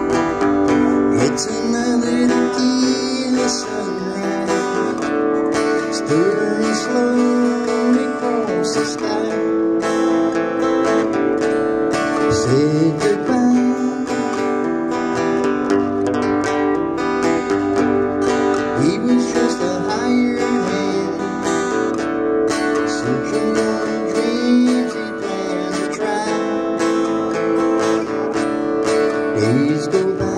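Strummed acoustic-electric guitar with a harmonica played from a neck rack, in an instrumental passage of a song; the held harmonica notes bend in pitch now and then.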